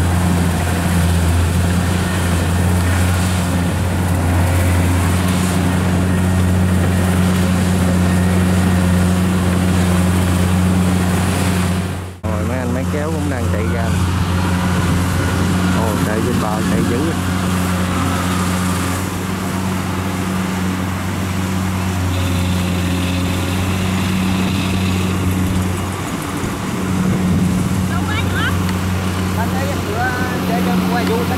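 Diesel engine of a Kubota rice combine harvester running steadily under load while cutting rice. About 12 s in, the sound cuts to another steady engine, with voices faintly heard for a few seconds after the cut.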